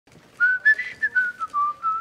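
A person whistling a tune, a run of short notes stepping up and down in pitch, starting about half a second in.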